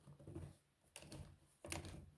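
Faint, irregular clicking and rattling of 3D-printed plastic clamp parts being handled on a wooden bar, with a sharper click about a second in and another near the end.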